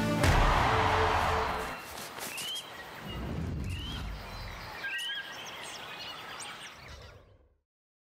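Broadcast ident sound design: a whoosh near the start, then a few short, rising, bird-like chirps over a soft ambient bed, fading out near the end.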